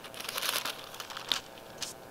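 Thin paper pages being leafed through, as in a Bible, in short crinkly rustles with two sharper page flicks, one past the middle and one near the end.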